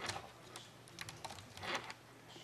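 Laptop keyboard being typed on: a few scattered, faint key clicks, with a slightly longer burst near the end.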